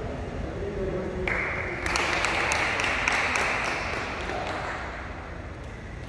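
Small crowd of spectators clapping and applauding the end of a wrestling bout. The applause starts about a second in, is loudest for a couple of seconds, then dies away.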